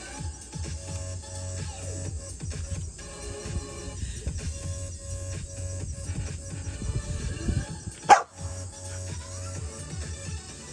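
A dog gives one short, sharp bark about eight seconds in, over steady background music.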